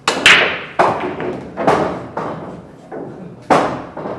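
Pool break shot: the cue tip strikes the cue ball, then a loud sharp crack as it smashes into the rack. The scattered balls follow with a string of knocks off each other and the cushions, one more loud knock about three and a half seconds in.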